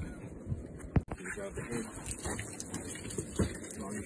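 Faint voices over steady background noise, with one sharp click about a second in.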